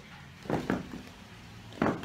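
A few soft, short thumps in a quiet room: one about half a second in, another just after, and one near the end.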